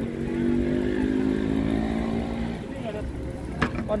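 A passing motor vehicle's engine hums steadily with its pitch sinking slightly, then fades after about two and a half seconds. A couple of sharp clicks come near the end.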